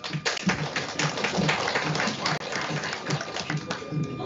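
An audience applauding, a dense patter of many hands clapping that stops suddenly near the end.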